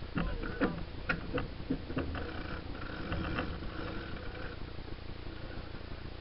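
Steady wind and water noise aboard a sailing yacht under way, with a few sharp clicks and knocks in the first two seconds.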